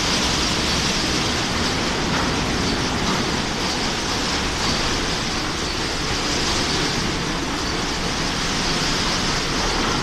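Ceccato Antares rollover car wash running: its spinning brushes scrub the car while water sprays over it, a steady, even rushing noise.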